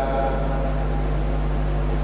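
A steady low hum with a light hiss over it, unchanging throughout.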